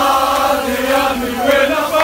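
A crowd of ultras supporters chanting together in unison, loud and sustained, with many male voices on a held, sung line.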